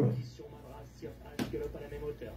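A man's voice trailing off, then a faint background murmur and a single sharp click a little past halfway through.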